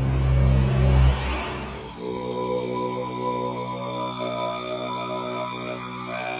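Background music: a deep bass swell, then from about two seconds in a steady held drone with many overtones.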